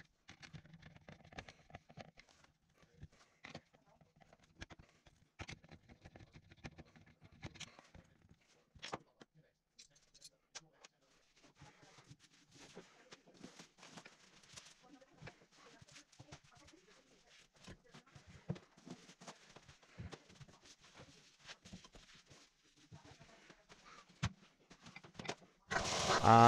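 Mostly quiet room with scattered faint clicks and light knocks of handling: a screwdriver and metal shower trim being fitted and handled.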